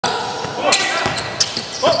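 Basketball bouncing and knocking on a hardwood gym floor during play, with several sharp hits, amid players' voices in the gym. A shout of "Oh!" comes near the end.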